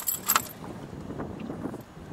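Sharp metallic clinks and rattles of pliers against a fishing lure's hooks in the first half second, while a caught fish is being unhooked, followed by softer handling and rustling.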